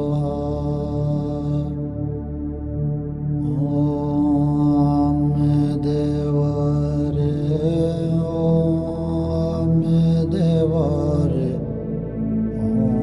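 Background music: a chanted mantra sung in a slow melodic line with wavering pitch, over a steady low drone.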